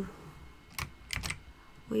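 A few computer keyboard keystrokes, short clicks close together about a second in.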